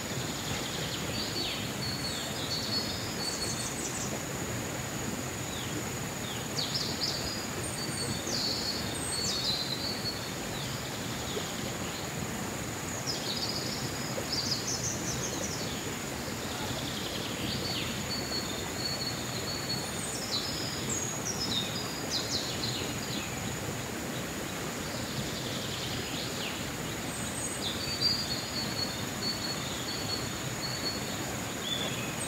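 Forest ambience: birds chirping and trilling on and off, a steady high-pitched insect drone throughout, and a steady low rush that fits the stream beside the garden.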